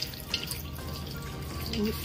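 Wet squelching of a hand kneading marinated pork slices into a thick cornflour batter in a steel bowl, with a few short squishes in the first half.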